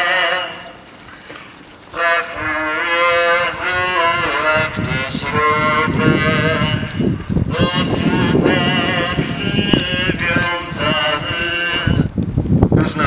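Crowd singing a slow Lenten hymn together in long held notes; the singing breaks off about half a second in and starts again at about two seconds.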